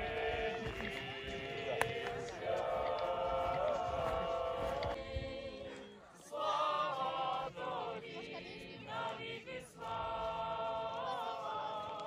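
A group of people singing together in Ukrainian, held notes in phrases with short pauses between them.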